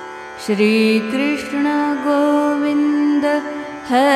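Devotional Hindustani mantra music over a steady drone. About half a second in, a woman's voice enters on a long held note, probably the word 'Shree', sung with gliding, wavering ornaments.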